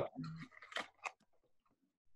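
A few faint clicks of plastic and silicone being handled as a squeeze bottle's nozzle is pushed into the refill insert of a silicone wristband, during the first second or so.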